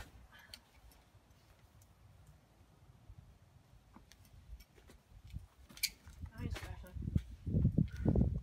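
Low outdoor background rumble with a few faint, scattered clicks, then people talking, muffled, in the last second or two.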